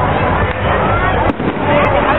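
Fireworks popping and crackling over the chatter of a large outdoor crowd.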